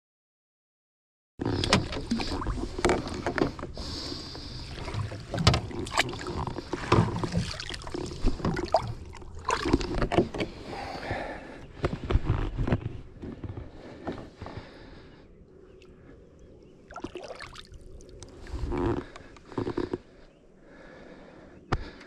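Water splashing and sloshing against the side of a boat, with sharp knocks on the hull, as a hooked musky thrashes at the surface beside the boat. The splashing is busiest for the first dozen seconds, then eases, with a few more splashes later on.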